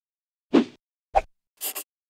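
Title-animation sound effects: a plop about half a second in, a sharper short knock just after a second, then two quick high swishes near the end.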